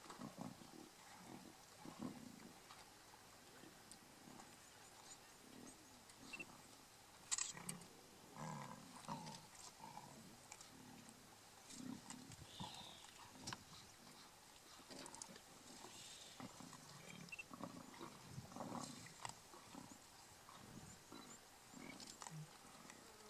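Lions growling faintly and on and off, low rumbling snarls typical of a pride squabbling over a kill. A single sharp click about seven seconds in.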